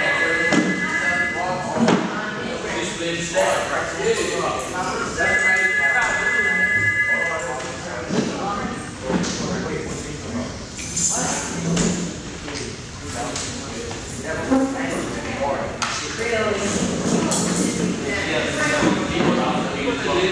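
Indistinct voices talking in a reverberant hallway. A steady high two-note tone sounds twice, for about two seconds at the start and again about five seconds in.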